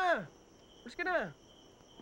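Crickets trilling steadily in the background, a continuous high-pitched chirr, under two short spoken words.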